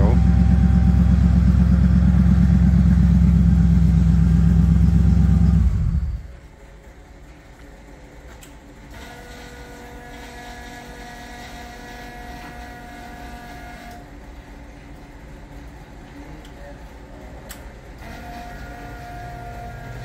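Bombardier snow vehicle's engine, fitted with Holley Sniper electronic fuel injection, idling steadily and then stopping abruptly about six seconds in. A faint steady whine with a few thin tones is left after it.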